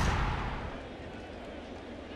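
Broadcast transition sound effect under an inning graphic: a rushing whoosh with a deep rumble, fading out within the first half second or so. Faint steady stadium crowd ambience follows.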